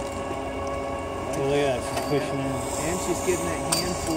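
Faint, indistinct talking through the middle over a steady hum.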